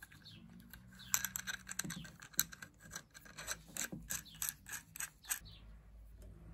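Small metal lamp parts clicking and scraping as they are handled and fitted together, a quick irregular run of ticks starting about a second in. A bird chirps faintly now and then.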